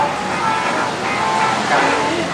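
A person talking over background music.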